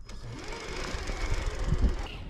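Electric motor and gear drivetrain of a 1:10-scale RC crawler whirring steadily as it drives over dirt, recorded up close from a camera mounted on the truck.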